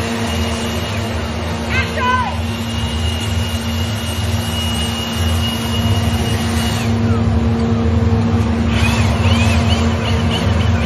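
Small motorboat engine running steadily with a low hum. Brief high chirping calls come about two seconds in and again near the end, with a steady high whistle-like tone between them.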